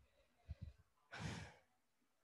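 A single short sigh, one breath out, a little past a second in, amid near silence.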